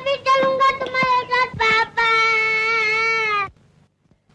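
A young child's high voice calling out in quick repeated cries, then one long drawn-out wailing call that stops suddenly about three and a half seconds in.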